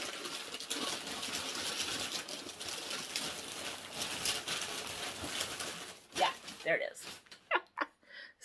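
Rustling and small clicks from items being rummaged through in a bag, steady for about six seconds. In the last two seconds the rustling stops and a few short murmured vocal sounds follow.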